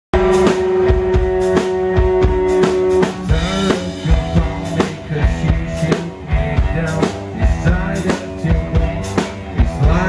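Live rock band: electric guitar, bass and drum kit playing to a steady beat. A long note is held for about the first three seconds, then a man's singing comes in over the band.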